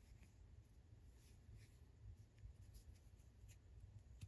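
Near silence: faint, brief scratches and rustles of a metal crochet hook and yarn as slip stitches are worked, over a low steady hum.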